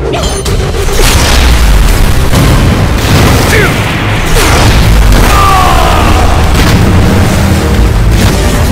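Action film trailer sound mix: loud, heavy booms and explosion effects over music.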